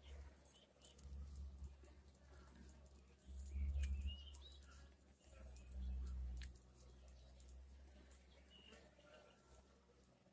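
Faint bird chirps, a few short calls here and there, over a low rumble that swells twice, around four and six seconds in.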